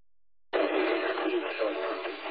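Police dispatch radio transmission: a burst of narrow-band static with a faint, unclear voice in it, cutting in about half a second in after a moment of dead silence.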